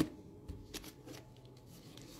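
Light handling noises of small plastic gel-paint jars being moved and set down on a table by gloved hands: a sharp click at the start, then a few soft taps and rustles.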